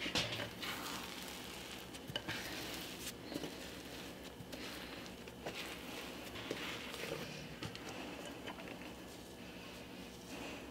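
Faint, soft sounds of sticky sourdough dough being tipped out of a stoneware bowl onto a floured wooden counter, with fingers scraping the bowl and a few light taps.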